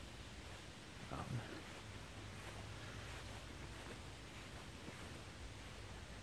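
Quiet outdoor background: a faint, even rustle of noise over a steady low hum, with one brief soft sound about a second in.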